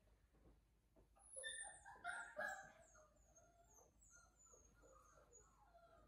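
Bordoodle puppy whining: one short, high-pitched burst of whine about a second and a half in, followed by faint high chirps.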